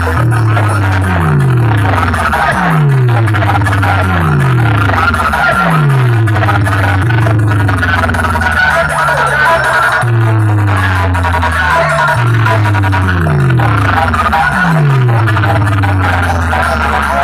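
Very loud DJ dance music blasting from big sound-box speaker stacks. A deep bass line of notes sliding down in pitch, one every second or so, runs under a dense, harsh midrange.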